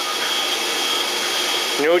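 A steady whirring machine noise with a faint high-pitched whine, even in level, until a man's voice says "No" near the end.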